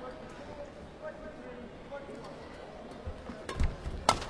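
Low murmur of an indoor arena crowd between points, then in the last second a badminton rally starts: sharp racket strikes on the shuttlecock and thudding footfalls on the court.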